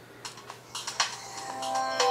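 A few faint clicking ticks, then the Samsung Galaxy S GT-I9000's startup sound begins about one and a half seconds in: sustained electronic chime tones that build up as the phone boots.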